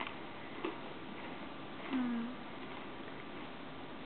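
Faint taps and soft patter of a kitten batting a sock on carpet over steady hiss, with one short low hum about two seconds in.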